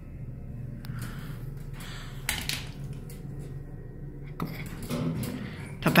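Steady low hum of a Thyssenkrupp hydraulic elevator car travelling up, with a faint click about a second in.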